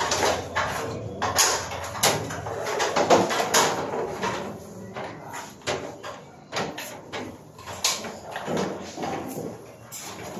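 Insulated electrical wires being pulled and handled overhead: irregular rustles, scrapes and light knocks at uneven intervals.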